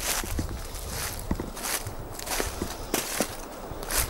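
Footsteps crunching through dry leaves and pine needles on a forest floor, with irregular steps a few times a second.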